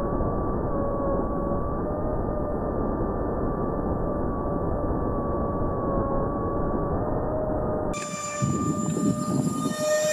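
A 70mm electric ducted fan jet heard through its onboard camera at half throttle: a steady fan whine over rushing air, muffled with no high end. About eight seconds in, the sound changes to a ground recording in which the fan whine is thinner and more distant.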